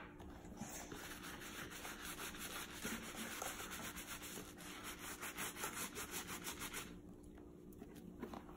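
Small bristle brush scrubbing saddle soap lather into a leather boot in quick back-and-forth strokes, stopping about seven seconds in.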